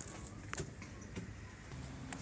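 Faint footsteps on a concrete path, a couple of sharp steps standing out, over a low steady background rumble.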